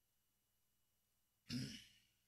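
A man clearing his throat once, a short rough burst near the end after near silence.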